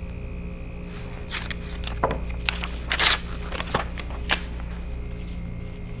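A sheet of paper being trimmed and handled on a cutting mat: a few short scrapes and rustles, the loudest about three seconds in.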